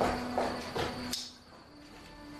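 Rhythmic chirping, about two to three pulses a second, over a steady low hum; it drops away a little after a second in.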